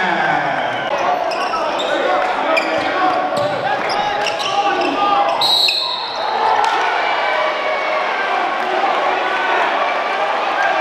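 Basketball game sound in a gymnasium: a steady wash of crowd and player voices, with a basketball bouncing on the hardwood and short, high sneaker squeaks scattered through it.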